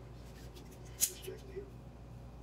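One sharp snip of hair-cutting scissors about a second in, over faint voices in the background and a steady low hum.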